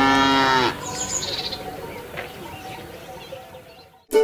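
A cow mooing, used as a sound effect to close a country-style jingle, drops in pitch and ends under a second in. A brief high bird chirp follows, and the sound then fades away.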